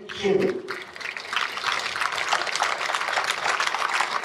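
A crowd clapping steadily from about a second in, after a man's brief words at a microphone.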